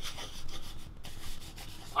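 Marker scribbling on a sheet of paper: irregular scratchy strokes.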